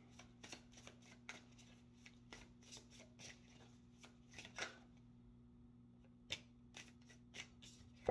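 Tarot deck being hand-shuffled: faint, quick papery card clicks through the first five seconds, thinning out to a few scattered clicks after that.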